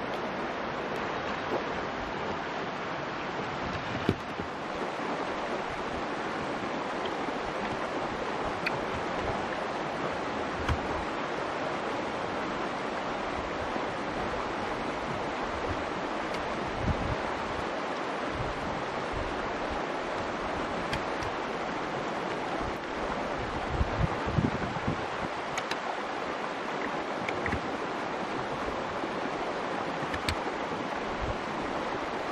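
Steady rushing of a nearby river, with a few dull knocks now and then.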